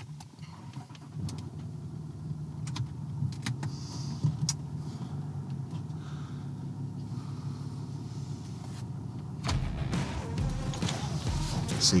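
Land Rover 4x4's engine idling steadily, heard from inside the cabin, with a few sharp clicks in the first few seconds. A deeper rumble joins about nine and a half seconds in.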